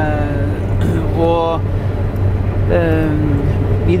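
Claas combine harvester running in a steady low drone as it harvests. A man's voice speaks in three short phrases over it.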